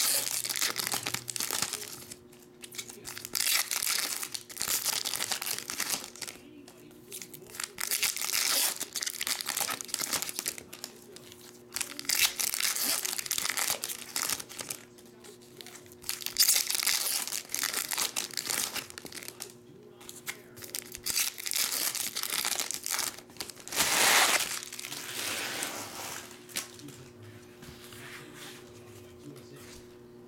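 Foil trading-card pack wrappers crinkling and tearing as packs are opened by hand, in bursts every few seconds, over a steady low hum. The last few seconds are quieter handling as a stack of cards is squared up.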